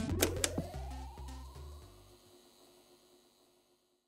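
Tail of a transition jingle with a couple of sharp clicks and a rising sweep, dying away about two seconds in.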